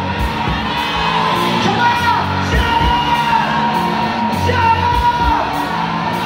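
Live rock band playing: a male lead vocalist singing into a microphone over electric guitars, bass guitar and a drum kit, with a steady drum beat.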